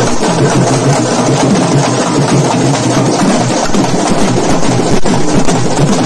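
Loud, dense live folk drumming played for karakattam dancing, led by a two-headed barrel drum.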